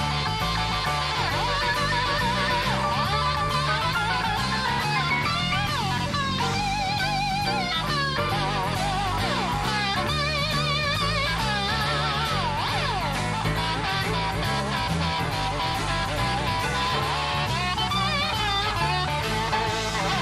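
Electric guitar soloing in wavering, sliding notes over bass and drums, live blues-rock band playing at a steady level.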